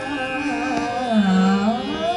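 Indian classical melody from a female voice and a violin in Carnatic style over a steady drone. The line slides down in a long ornamental glide about a second in and climbs back up near the end.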